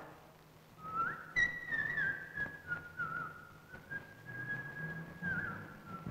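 A person whistling a slow tune: one clear line of notes that begins about a second in, slides up at the start, then holds mostly level with small steps up and down.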